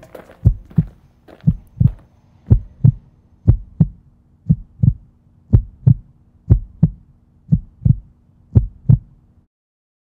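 Heartbeat sound effect: a low double thump, lub-dub, about once a second, nine beats in all over a faint steady low hum, then it cuts off about nine and a half seconds in.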